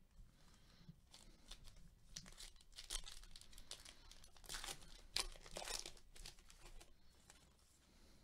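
Foil wrapper of a baseball card pack being torn open and crinkled: faint, short rips and crackles that come and go, strongest in the middle.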